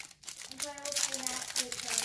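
Foil wrapper of a Panini Mosaic trading-card pack crinkling in the hands as it is torn and pulled open, in irregular crackles.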